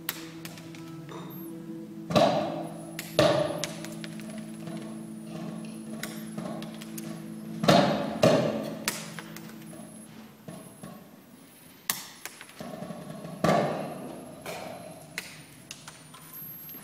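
Small objects dropped from a stepladder landing one after another, each a sharp knock with a short ringing tail, several in all with the loudest about two, three, eight and thirteen seconds in. A steady low hum of a few held tones lies under the first part and fades out about two-thirds of the way through.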